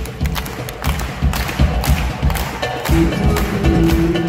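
Live rumba-flamenco band playing, led by nylon-string guitar over bass and drums: a stretch of sharp, rhythmic percussive strokes, with held notes coming back in about three seconds in.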